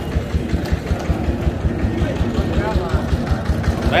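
An engine idling with a steady low, even beat of about six thuds a second, with voices faint in the background.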